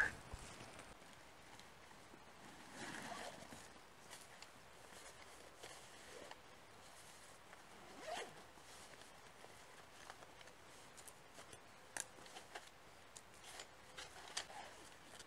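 Faint zipping and rustling of a fabric bag as a folding camp chair is unpacked, with a few light clicks and knocks later on.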